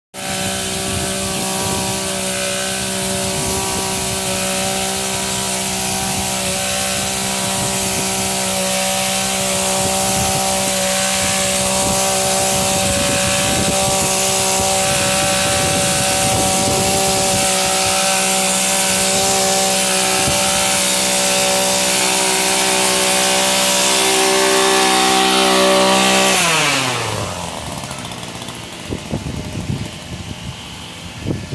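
Small two-stroke engine of a gas-powered hedge/string trimmer running steadily at high speed. Near the end the pitch falls away over about a second as the throttle is released, and it drops to a much quieter idle.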